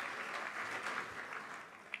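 Audience applauding, the applause dying away over the two seconds.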